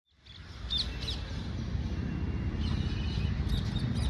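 Outdoor ambience: a steady low rumble with a few short bird chirps, two of them about a second in.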